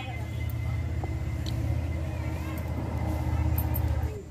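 A steady low rumble that cuts off abruptly at the end, with faint voices in the background.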